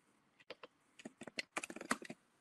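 Typing on a computer keyboard: a few keystrokes about half a second in, then a quicker run of keys through the second half.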